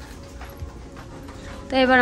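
Quiet indoor background with a faint steady hum and a few soft ticks, then a person starts speaking Bengali near the end.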